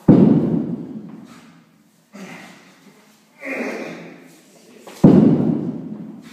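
A heavy atlas stone dropped onto the gym's floor pad twice, about five seconds apart. Each drop is a loud thud that dies away over about a second.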